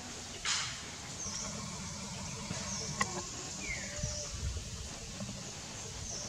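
Birds chirping: short, high, falling chirps about once a second, with a brief rustle about half a second in and a sharp click about three seconds in.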